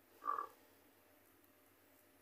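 Near silence on a phone line, broken once, about a quarter second in, by a short faint vocal murmur.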